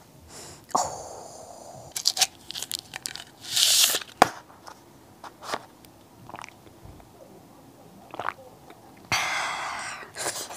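Crinkling of a straw and plastic drink cup, with a sharp click a little after four seconds in, then slurping through the straw, loudest near the end.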